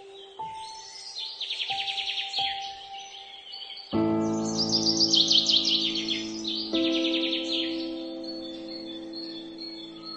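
Slow, soft piano music: sparse single notes, then a fuller chord about four seconds in and another near seven seconds, each left to ring. Birdsong is layered over it, with bursts of rapid high chirping trills several times.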